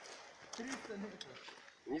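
Faint, muffled men's voices murmuring, with a couple of small clicks. There is no gunfire or RPG blast.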